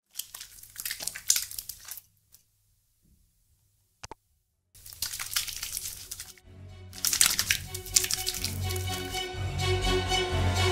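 Hands under a wall-mounted soap dispenser, then soapy hands rubbing together, heard as two stretches of rustling with a short click between them. Music with held notes comes in about seven seconds in and grows louder.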